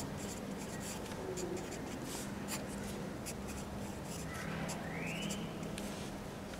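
Wooden pencil writing on paper: a run of short, scratchy strokes and light taps of the lead, over a low steady hum.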